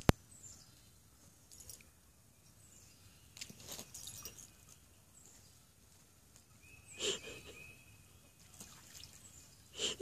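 Mostly quiet outdoor background, broken by a few faint, short splashes: a dog stepping and nosing in water pooled on a sagging pool cover.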